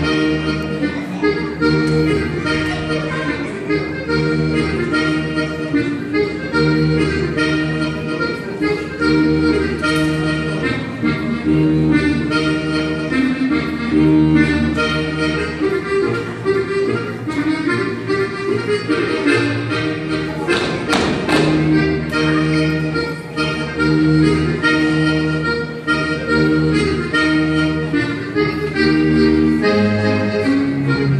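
Accordion playing a lively Sardinian ballu dance tune, a running melody over a steady, repeating bass accompaniment.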